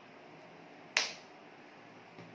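One sharp smack of hands striking while signing in sign language, about a second in, over faint room hiss.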